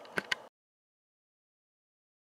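Two short clicks over faint room hiss, then the sound cuts off to dead silence about half a second in.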